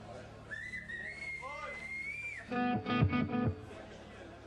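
Electric guitar through a stage amp: a long high whistle-like tone, rising slightly, for about two seconds, then a chord struck several times, loud and ringing, about halfway through.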